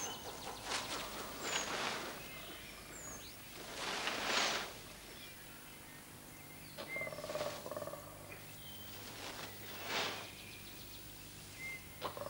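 Forest ambience: scattered short, high bird chirps and whistles, with several brief rushes of noise, the loudest about four seconds in.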